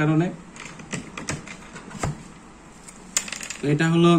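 A few light, scattered clicks and taps of a pen and multimeter test probes being handled on a tabletop, between stretches of a man speaking at the start and again near the end.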